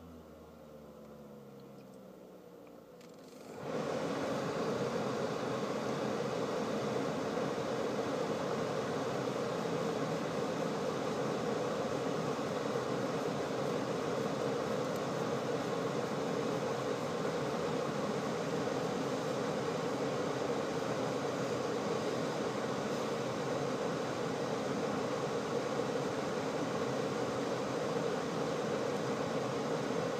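Tesla Model S climate system running while parked: a faint hum at first, then about three and a half seconds in a much louder steady rush of air with a hum underneath as the cabin fan runs along with the A/C compressor.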